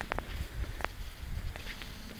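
Bare feet stepping along a wooden plank boardwalk, with a few short clicks and knocks in the first second over a low rumble.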